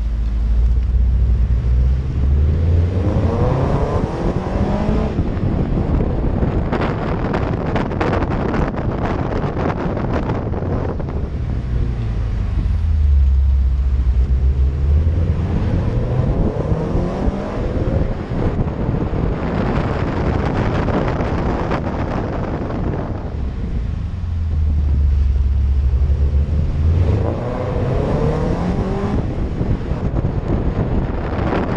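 Car engine pulling out of hairpin bends three times: a low rumble at slow speed, then a rising pitch as it accelerates, with wind and road noise between the pulls.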